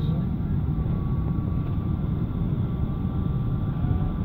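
Steady noise inside an airliner's passenger cabin: an even, low rumble with faint steady tones above it.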